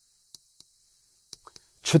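Chalk tapping on a chalkboard while writing: a few faint, separate clicks. A man starts speaking near the end.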